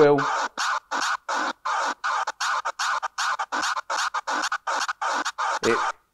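A looped scratch sample played through Serato from a Numark Mixtrack Pro FX, moved on the jog wheel while the fader cut pads chop it in and out like fast crossfader cuts, about four cuts a second.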